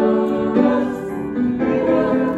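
Three singers, two women and a man, singing a worship song into microphones with grand piano accompaniment, holding long notes that change every second or so.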